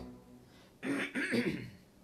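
A man clears his throat with a couple of short, harsh rasps about a second in. Just before that, a held keyboard note dies away at the start.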